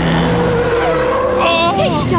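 Cartoon race cars pulling up and skidding to a stop on sand: engines running under a long steady tyre squeal, followed by a short vocal exclamation near the end.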